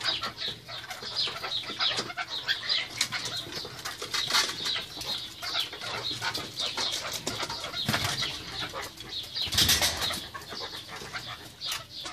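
Captive Alectoris partridges (kekliks) in a courtship chase: a steady run of quick scuffling and wing flaps, with one louder flurry of wingbeats about ten seconds in.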